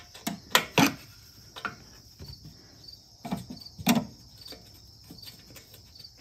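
A wrench clinking and knocking against the carburetor and manifold bolts as they are loosened: a few sharp metallic clicks in the first second and two more louder knocks a little past the middle. Crickets chirp steadily in the background.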